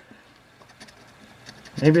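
Faint scraping of a large coin-shaped scratching token rubbing the coating off a scratch-off lottery ticket, a few short strokes about a second in.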